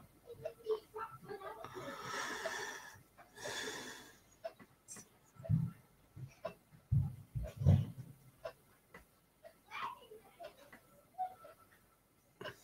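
Two long, breathy exhalations close to the microphone, followed by a few dull knocks and small clicks from handling a model on a table.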